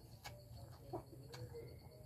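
Noodles being slurped and chewed, heard as a few soft wet mouth clicks, with a faint low coo in the second half.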